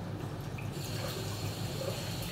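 Water tap running into a sink, turned on about three-quarters of a second in, over a steady low hum.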